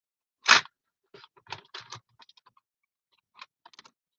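Paper and craft supplies being handled at a paper trimmer. There is one sharp rustling knock about half a second in, then a scatter of short, light scratches and taps.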